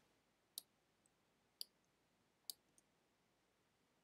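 Three faint computer mouse clicks, about a second apart, against near silence.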